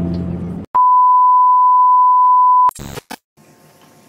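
The tail of the intro music, then a loud, steady electronic beep at a single pitch, held for about two seconds and cut off abruptly. A couple of short clicks follow, then faint room noise.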